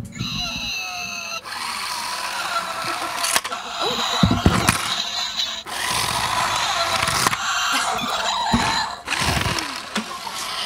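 Battery-powered talking toy car playing its electronic sound effects and voice clips through a small speaker. It opens with high electronic tones, then runs in long noisy stretches broken by short voice-like bits.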